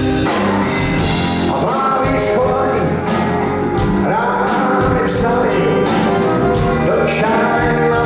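Blues-rock band playing live with a male lead vocal sung over it, heard from the audience in a concert hall.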